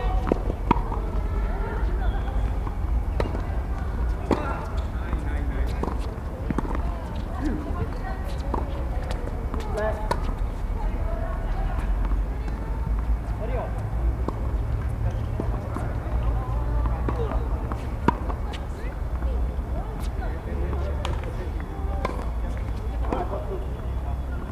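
Tennis balls struck by rackets and bouncing on a hard court, sharp irregular pops, with players' voices talking on and off throughout over a steady low rumble.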